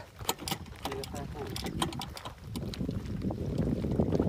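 Light clicks and crunches of loose gravel and stones, stepped on and picked up along a stony shore. A low wind rumble on the microphone grows louder toward the end.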